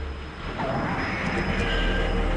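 A low, rumbling, noisy sound effect in the soundtrack, growing slightly louder.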